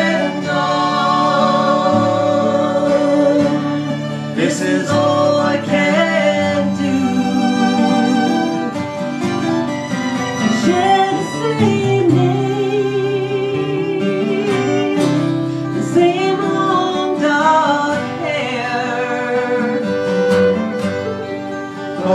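Live acoustic folk music: two acoustic guitars strummed and a fiddle bowed, with singing over them.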